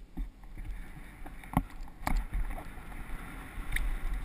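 Downhill mountain bike rolling over a dirt trail, its frame and parts rattling, with several sharp clicks and knocks over bumps, the loudest about a second and a half and two seconds in. Wind buffets the helmet-mounted camera's microphone in a low, gusty rumble.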